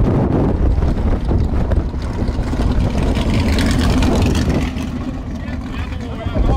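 V8 race cars' engines running down the strip, with wind buffeting the microphone; a steady engine tone swells from about two to four seconds in.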